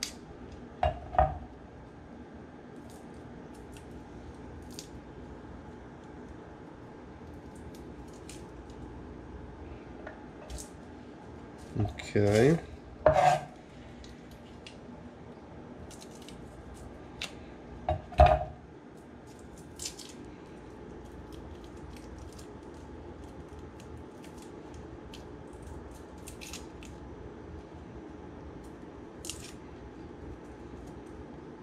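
Small clicks and scrapes of a chef's knife and fingers working garlic cloves on a wooden cutting board, over a steady low hum. There are a few louder knocks and scrapes, the biggest about 12 and 18 seconds in.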